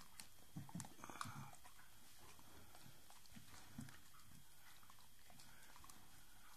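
Staffordshire bull terrier chewing on a shredded piece of pink fabric: faint chewing sounds, bunched about a second in and again near four seconds.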